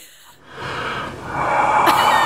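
A man's long, heavy exhale: a dying breath drawn out as a breathy rush that swells over a second and a half.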